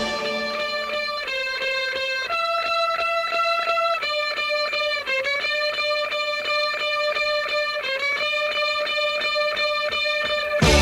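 Psychedelic rock recording in a sparse passage: an electric guitar alone holds notes that step up and down about once a second, each note pulsing rapidly through an effect.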